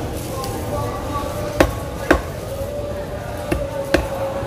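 Machete chopping tuna meat down onto a thick wooden log chopping block: four sharp knocks, two about half a second apart in the middle and two close together near the end.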